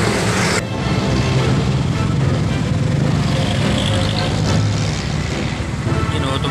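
Motorcycle tricycle running in street traffic: a steady low engine and road rumble, with a sudden change in the sound about half a second in.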